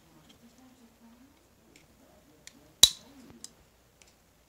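Small metallic clicks of hand work, then one sharp snap about three seconds in, much louder than the rest: a staple remover prying staples out of 2x2 coin holders.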